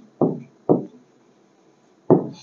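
Two dull knocks about half a second apart in the first second: a pen tapping against an interactive display board as words are written on it.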